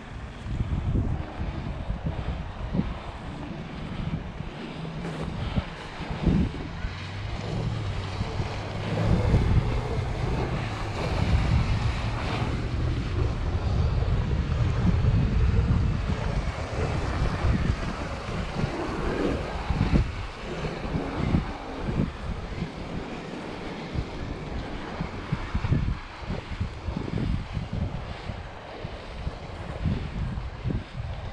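Wind buffeting the microphone over a large electric RC boat, running on 12S batteries, out on the water. The boat's noise is louder for a stretch in the middle.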